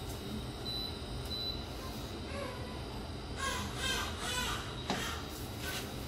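Steady hum of an induction hob heating oil in a wok; the oil is not yet hot enough to sizzle. About halfway through comes a short series of four or so repeated calls, then a single click.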